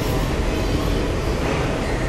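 Indian Railways passenger coaches rolling past along the platform track, a steady rumble of wheels on rails.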